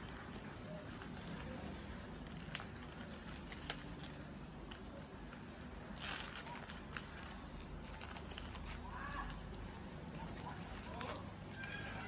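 Faint rustling and crinkling of paper bouquet wrapping and ribbon being handled and tied, with scattered light ticks and a brief louder rustle about six seconds in.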